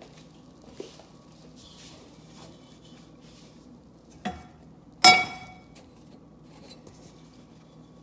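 Metal cookware clanking on a gas stove's grate: a light knock about four seconds in, then a louder, ringing clank a second later as a small saucepan is set out and the big pot is handled. Before that, faint crackling of the hot butter and corn-syrup mixture still bubbling in the pot.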